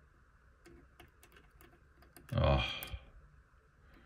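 Light, scattered clicks and ticks of a metal pick poking at the contacts of a nine-pin valve socket, with a short murmured voice sound about halfway through.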